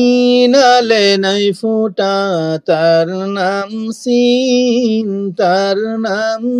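A single voice chanting Arabic letter syllables in a drawn-out, sing-song recitation tone, as in a Quran reading drill on the letters sin and shin with their vowel marks. Long held notes come in about five phrases with brief breaks between them.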